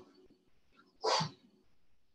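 A single short, sharp voiced sound about a second in, standing out against faint room tone.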